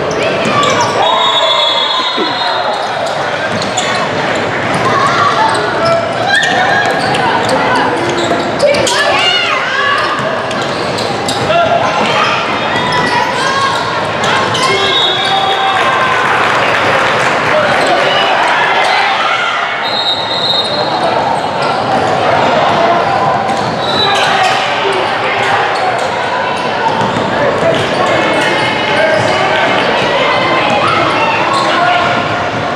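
Basketball being dribbled and bounced on a hardwood gym floor during play, with short high squeaks from sneakers, under a steady hubbub of voices from players and spectators in a large, echoing gym hall.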